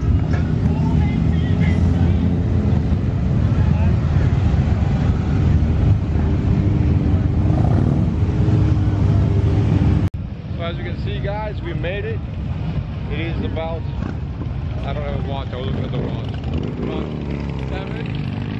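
Several motorcycles running as they ride past on the street, loud and low-pitched, through the first half. After a cut about ten seconds in, people talk nearby over quieter passing motorcycles.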